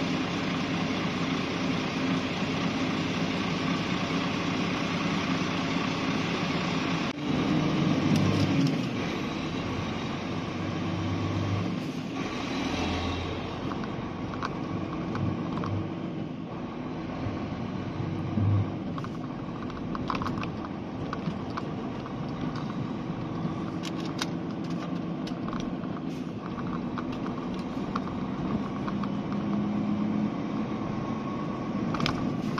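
Vehicle engine idling, then pulling away about seven seconds in and running steadily as it drives on.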